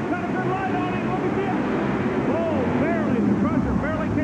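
Monster truck engines running hard in a side-by-side drag race, a loud steady rumble with many voices from the arena crowd yelling over it.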